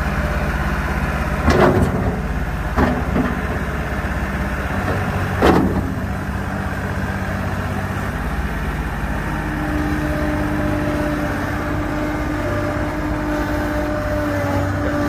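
John Deere 250 skid steer's diesel engine running steadily as the loader is worked, with three sharp clunks in the first six seconds. About ten seconds in, a steady whine joins the engine as the machine drives.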